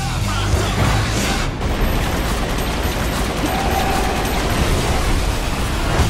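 Loud trailer music mixed with dense action sound effects: booms and a sustained rush of noise.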